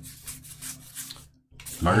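Trading cards sliding and rubbing against one another as a pack is thumbed through by hand, in short faint scrapes. A man starts speaking near the end.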